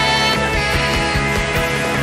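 Live worship band playing: drums, electric bass, acoustic guitar and keyboard, with the drums keeping a steady beat under sustained chords.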